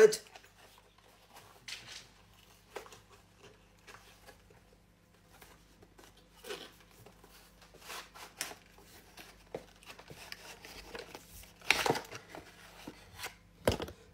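Cardboard box and paper manuals being handled during unboxing: scattered faint rustles and light knocks, the loudest about twelve seconds in.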